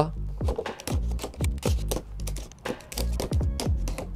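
Small hobby knife slitting the tape and seals on an action-figure box: a run of quick clicks and scrapes over background music.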